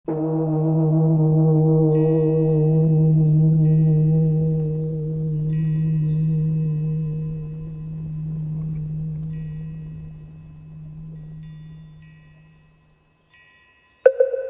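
A deep bell struck once at the start. Its ringing tone dies away slowly over about thirteen seconds, with a slight wavering. Several short bursts of high tinkling chimes sound over it.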